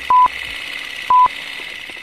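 Countdown beeps of a film-leader transition effect: two short, identical electronic beeps a second apart, over a steady hiss.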